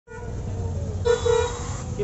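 A vehicle horn honking in street traffic: one steady note held for most of the two seconds, louder in the second half, over a low rumble of engines.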